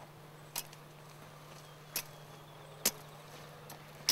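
Long-bladed Christmas-tree shearing knife chopping through the branch tips of a young conifer: three sharp cuts about a second apart, the third the loudest, and a fainter one near the end.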